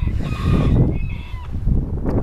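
A bird calling with drawn-out, honk-like notes in the first second and a half, over a loud low rumble on the microphone.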